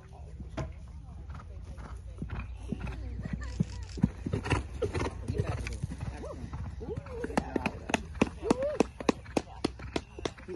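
Wind rumbling on the microphone under low voices and a short laugh, then a quick run of sharp clicks, about three or four a second, through the last three seconds.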